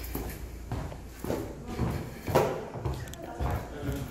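Footsteps on a hard floor and stairs in a stairwell, walking at an even pace of a little under two steps a second, with muffled voices.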